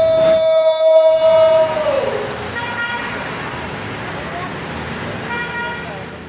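A man's long, loud held yell that drops in pitch and breaks off about two seconds in. It is followed by a rushing, crashing noise that slowly fades.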